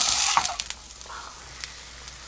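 Flounder sizzling as it fries in oil in a nonstick pan. The sizzle cuts off suddenly about half a second in, leaving low background noise with one light click.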